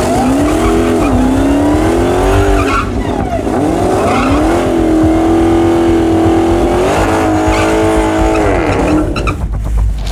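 Dodge Demon 170's supercharged 6.2-litre V8 revving hard through a burnout, the rear tyres spinning and squealing on the pavement to heat them before the launch. The revs drop and climb again several times and ease off near the end.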